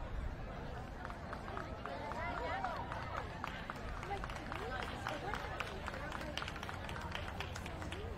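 Murmur of ringside spectators talking, with a quick run of light ticks from about a second in.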